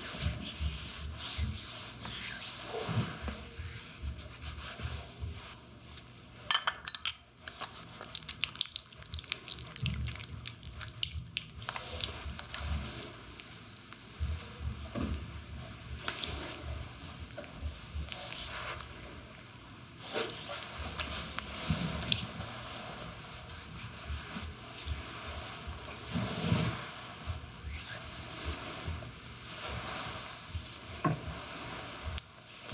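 Hands rubbing and kneading an oiled, powdered leg in a massage, palms sliding over skin in irregular scratchy strokes. A brief flurry of fine scraping comes about seven seconds in.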